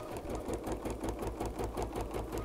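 Bernina B 790 PRO embroidery machine stitching a basting box, running long straight stitches with an even, rapid needle rhythm.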